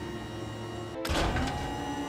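Cartoon soundtrack: steady background music, then about a second in a sudden rush of noise with a rising whine that settles into a held tone.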